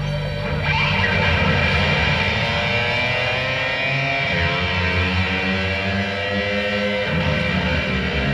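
Live rock band playing, led by an electric guitar that comes in loud about a second in over a sustained low backing.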